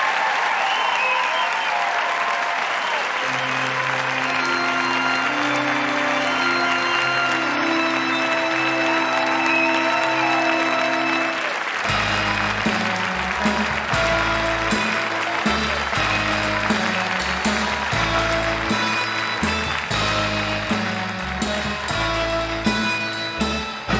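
Audience applauding, with closing music coming in a few seconds in. The music starts as long held low notes and turns to a rhythmic bass line about halfway through.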